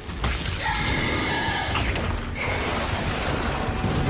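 Dense anime battle sound effects: a loud, continuous low rumbling noise with a few brief high ringing tones over it in the first half.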